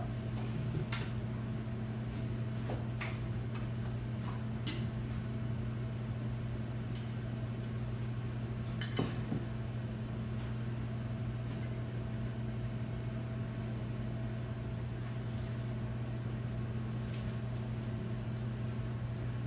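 Cookware being handled: a few scattered clinks and knocks as a lidded pan and a flat griddle are shifted between a glass cooktop and the counter, the loudest about nine seconds in. Under them a steady low hum from kitchen equipment.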